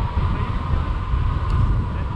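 Airflow buffeting an action camera's microphone in paraglider flight: a loud, steady low rumble, with a faint steady high tone running underneath.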